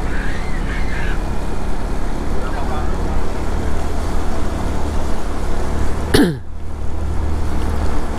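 Motorbike riding on a wet road: steady low engine and road rumble with wind noise on the microphone, and a brief sharp sound with a falling pitch about six seconds in.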